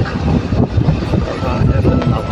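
Motorcycle riding at road speed: the engine running under a heavy, uneven rumble of wind across the microphone.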